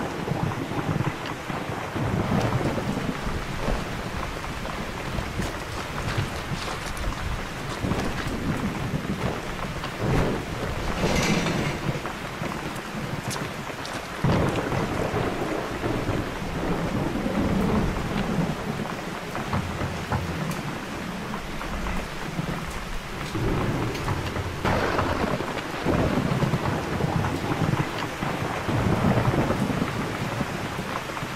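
Steady heavy rain with low rolls of thunder that swell and fade several times.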